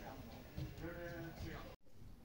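Children's voices calling out, pitched and drawn out, over low thuds. The sound cuts off abruptly near the end.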